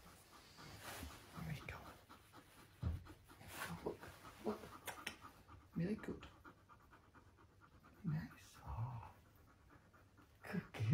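Dog panting in irregular bursts of quick breaths.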